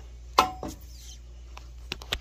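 Hand-held can opener biting into the steel lid of a can: a sharp metallic snap with a short ring about half a second in, a lighter click just after, then a faint hiss as the lid is pierced and another click near the end.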